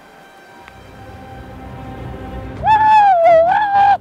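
Background music swelling up, then a long, high-pitched "woo!" yell from a man, held for over a second near the end.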